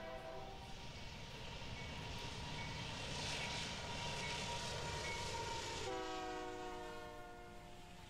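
A train horn sounds a held chord of several steady tones at the start and again near the end, with the rumble of a train growing louder and fading between them.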